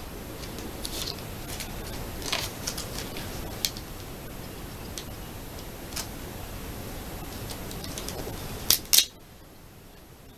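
A paper sticker being peeled from its backing and pressed onto an album page: scattered small crinkles and clicks of handled paper, with two louder clicks just before the end, after which the steady background hiss drops away.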